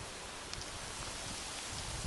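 Steady hiss of wind through the leaves of tall trees, with low buffeting of wind on the microphone.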